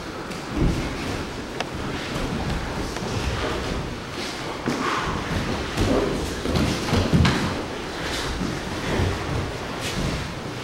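Grappling on padded mats: irregular thuds and shuffling of bodies, knees and feet on the mats, with a few sharper knocks.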